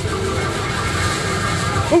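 Steady din of arcade machines with faint steady electronic tones over it.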